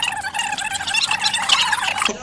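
A boy's high-pitched, strained laughter, kept up without a break: forced laughter held going for a challenge to laugh nonstop.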